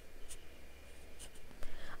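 Quiet pause with a few faint, short scratches and taps of a stylus on a pen tablet as the slide is marked up.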